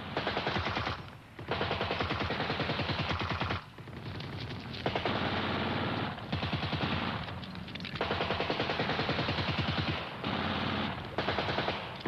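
Automatic rifle fire in long bursts: a rapid rattle of shots, broken by a few short pauses.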